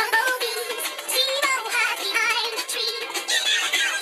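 Children's counting song: music with a sung vocal line, the singing sounding synthetic and processed.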